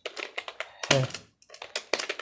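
Fast typing on a computer keyboard: a quick, uneven run of key clicks.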